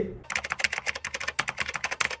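Rapid computer-keyboard typing, sharp clicks at about ten keystrokes a second, starting a moment in; a typing sound effect laid over a text card.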